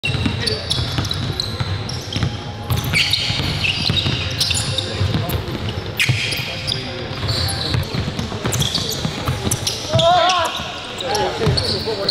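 Live indoor basketball play: the ball bouncing repeatedly on a hardwood court, sneakers squeaking, and players' voices, with a drawn-out call or shout about ten seconds in.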